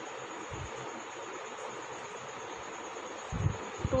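Steady background hiss with two soft low thumps, one about half a second in and one near the end, as a hand moves on a notebook during writing with a pen.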